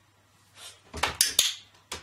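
A puppy climbing into a shallow plastic box: a quick cluster of sharp clattering knocks of paws and body against the plastic about a second in, and one more sharp click near the end.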